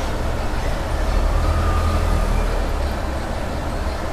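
Cellophane gift wrap rustling and crinkling as it is pulled off a box, over a steady low rumble.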